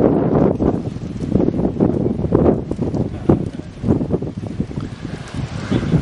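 Wind buffeting the camera microphone in irregular gusts.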